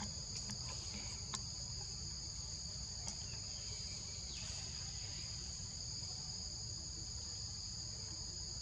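Steady chorus of forest insects shrilling in two high, even tones, over a low steady rumble, with a few faint clicks in the first few seconds.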